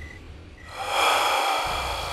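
A person's loud breath: a sudden breathy rush about a third of the way in that slowly fades.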